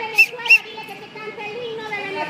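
Indistinct voices talking in the background, with two short high-pitched chirps, about a quarter and half a second in.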